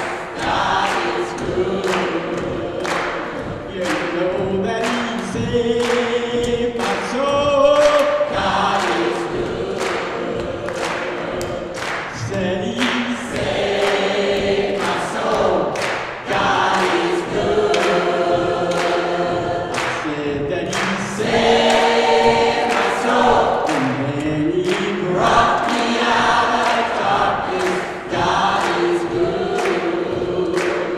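Large mixed gospel choir singing in harmony, with a steady beat underneath.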